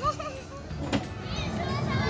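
Children's voices at a playground: a short sound from a young child at the start, a single sharp click about a second in, then high, gliding voices near the end over steady outdoor background noise.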